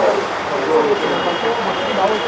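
Indistinct voices of several people talking over the steady running noise of an SUV's engine. A faint high steady tone comes in about halfway through.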